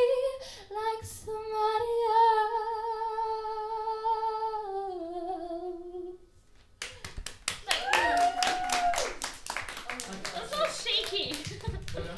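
A woman singing unaccompanied into a microphone holds a long final note with a wide vibrato, which drops in pitch and fades out about six seconds in. After a short pause a small audience applauds, with voices calling out over the clapping.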